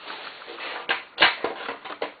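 A black plastic cover being worked loose and popped off a motorcycle's under-seat wiring compartment: rustling handling noise with a few sharp plastic clicks, the loudest a little past a second in.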